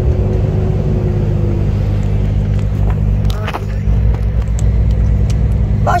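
Truck's diesel engine running while driving, heard from inside the cab as a steady low drone. It dips briefly a little after three seconds, then comes back a bit louder.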